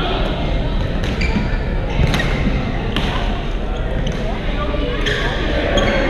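Busy indoor badminton hall: sharp racket-on-shuttlecock hits from several courts, about once a second or so, over a steady hubbub of many players' voices, with the reverberation of a large gym.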